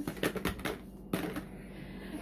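Small cardboard eyeshadow boxes handled and knocked together in the hands, a quick run of light clicks and taps in the first second or so, then softer rustling.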